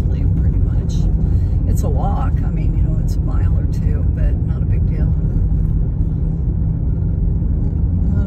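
Car driving slowly on a rough country road, heard from inside the cabin: a steady low rumble of tyres and engine, with scattered short ticks.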